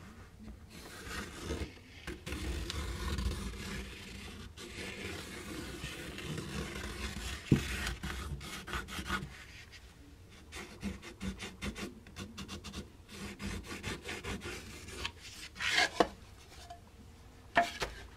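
Pencil tracing around a template onto a block of basswood, the lead scratching and rubbing along the wood. Toward the end come short clicks and a few light knocks as the template and pencil are handled.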